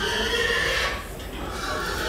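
A pig squealing twice: a long, shrill squeal for about the first second, and another starting near the end.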